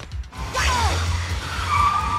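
Car tyres squealing as a car skids across a concrete garage floor: a short falling screech about half a second in, then a long steady squeal from about one and a half seconds in, over a low engine rumble.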